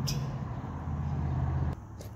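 A steady low mechanical hum, which stops abruptly near the end.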